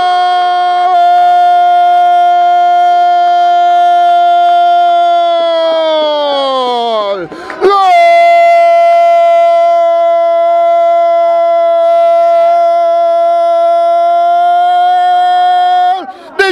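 A football commentator's long drawn-out "goool" shout for a goal. It is one held note for about seven seconds that sinks in pitch at the end, then a quick breath, then a second held note for about eight seconds.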